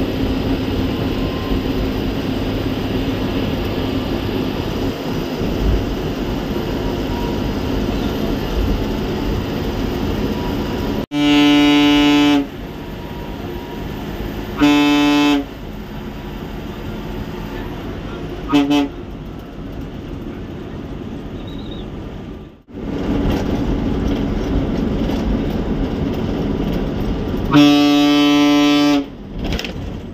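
Ashok Leyland BS4 bus's horn sounding four times over the steady drone of the engine and road noise heard from the driver's cabin. It gives two longer blasts of over a second, one about a second long, and one short toot.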